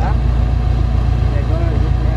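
A car engine idling close by, a loud low rumble with an even pulse, with faint voices over it.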